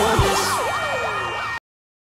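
Siren sound effect wailing quickly up and down in several overlapping sweeps over the intro music, with a low hit just after the start. It cuts off suddenly near the end, leaving silence.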